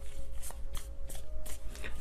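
A tarot deck shuffled by hand: an irregular run of light card clicks and flicks.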